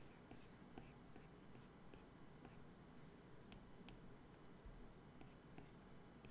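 Near silence with faint, irregular light taps and strokes of a stylus on a tablet's glass screen, several a second.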